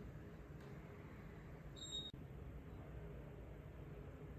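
Quiet room tone with a faint steady low hum. About two seconds in, a short high-pitched electronic beep sounds, followed at once by a faint click.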